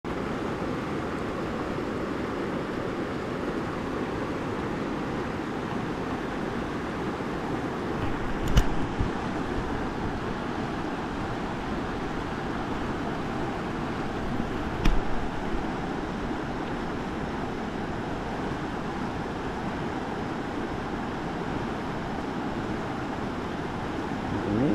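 River water rushing steadily over a shallow, rocky riffle. Two sharp knocks stand out, about six seconds apart.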